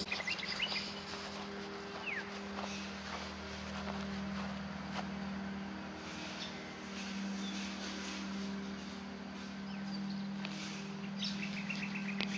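Outdoor garden ambience: birds chirping now and then, one short falling call among them, over a steady low hum.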